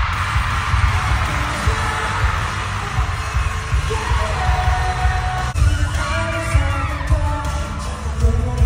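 Live pop concert music through an arena sound system, recorded on a phone: a deep pulsing bass beat throughout, with crowd noise early on and a singing voice toward the end.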